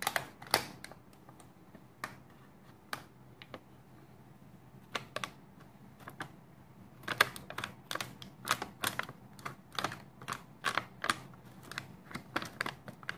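Small scissors snipping through a plastic-foil cookie-mix pouch: a series of short, sharp snips and crinkles, a few scattered ones at first, then a quick run of them in the second half as the pouch is cut open.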